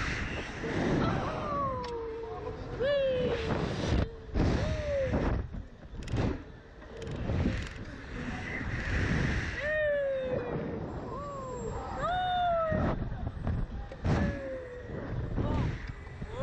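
Children's short high-pitched squeals and cries, mostly falling in pitch and repeated every second or two, over wind buffeting the microphone on a swinging thrill ride.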